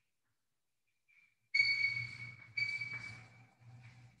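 Chalk squeaking and scratching on a blackboard as words are written. There are two strokes of about a second each, starting about a second and a half in, then a fainter one near the end. Each stroke is a steady high-pitched squeal over a dry scraping.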